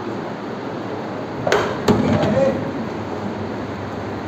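A wall-mounted electric fan being gripped and adjusted by hand: two sharp clicks or knocks less than half a second apart, about halfway through, over a steady background hum.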